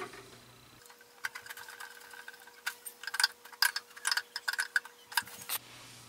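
Irregular sharp clicks and taps of the plastic condensate pump's housing and fittings being handled and fitted together during reassembly, some with a brief ringing tone.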